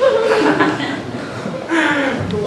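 A man laughing in short chuckles.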